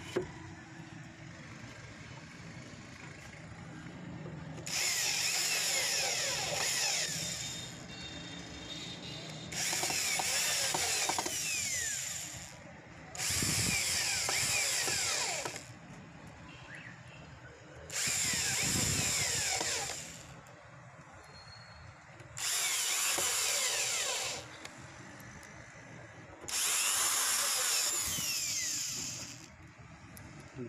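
Power drill driving screws into the rim of a wooden blower housing: six runs of about two seconds each, a few seconds apart, the motor's pitch sliding down as each screw bites in.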